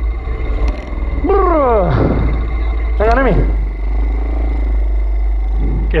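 125cc pit bike engine revving, its pitch falling steeply twice as the throttle comes off, once about a second in and again around three seconds in. Wind rumbles on the handlebar camera's microphone throughout.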